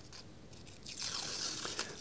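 A thin sheet of paper rustling and crinkling as it is lifted and peeled back by hand, a soft hiss starting about halfway through.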